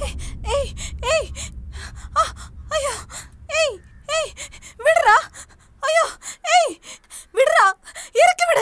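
A woman's short, strained cries and grunts of effort, about a dozen in a row, each rising and falling in pitch, as she struggles and is hauled onto a man's shoulder. They grow louder about five seconds in.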